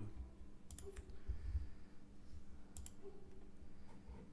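A computer mouse clicking twice, about two seconds apart.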